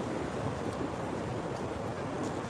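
Steady city-street background noise: an even hiss and low hum with no distinct events.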